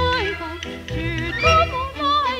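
Old recording of a 1940s Shanghai popular song: a woman singing a gliding melody with wide vibrato over a small band's accompaniment.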